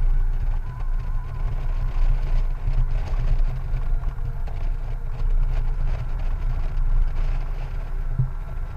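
Wind rumbling on the microphone of a Honda Gold Wing motorcycle at road speed, low and gusty, rising and falling throughout, with the bike's engine and road noise faint underneath.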